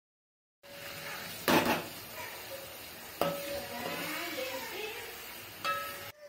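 Vegetables sizzling in hot oil in an aluminium pot, with a metal spatula knocking against the pot three times as they are stirred, loudest at the first knock about one and a half seconds in.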